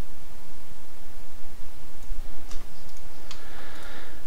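Steady background hiss with a few faint computer mouse clicks, about halfway through and again near the end.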